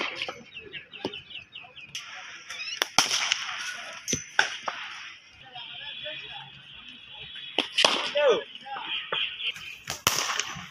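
Cricket bat striking the ball in a practice net: several sharp cracks a couple of seconds apart, with birds chirping in the background.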